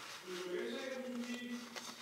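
Faint voices of family members in the background, quieter than the narrator's own speech.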